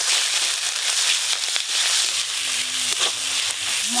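Ground spices and onion-ginger paste sizzling loudly in hot oil in an aluminium karai, stirred with a metal spatula. This is the masala being fried, at the stage where it needs stirring so it does not catch and burn.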